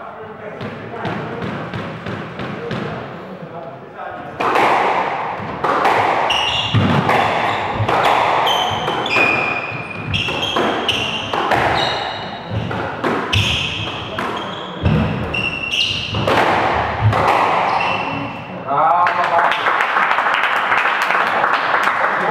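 A squash rally: sharp cracks of the ball struck by rackets and hitting the court walls, mixed with short squeaks of players' shoes on the wooden floor, running from about four seconds in until about eighteen seconds. Voices follow near the end.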